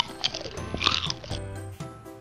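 Light background music with a person's voice making a couple of short pretend chomping noises, as a toy is fed a Play-Doh burger.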